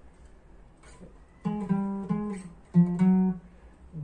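Cutaway steel-string acoustic guitar playing a short melody phrase: after about a second and a half of quiet, five single notes are picked one at a time in two small groups.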